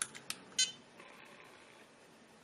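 Two sharp clicks of the front buttons on an ISDT BG-8S battery checker, then a short electronic beep from the checker a little over half a second in.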